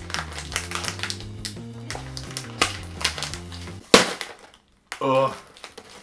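Background music over the crinkling of a foil-lined potato-chip bag being handled and opened, with a sharp crackle about four seconds in. After that the music stops, and there is a brief gap of silence.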